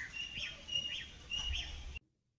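Birds chirping: a string of short, high chirps, about half a dozen in two seconds, stopping suddenly at the end.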